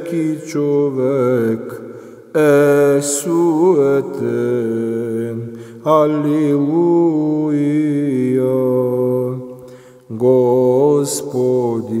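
A man's solo voice chanting a psalm in Serbian, in long phrases of held and gliding notes, with short pauses for breath about two seconds in and near ten seconds.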